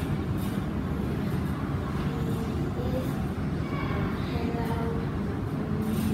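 Steady low rumble of background noise, with a faint voice murmuring a few seconds in.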